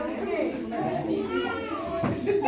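Several voices chattering over one another, children's voices among them, none of the words clear.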